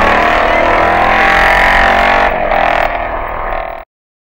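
Velocette 500 single-cylinder racing motorcycle with a squish-head engine at high revs, its pitch shifting slightly, then cutting off abruptly near the end. The exhaust note suggests a megaphone fitted inside the fishtail silencer.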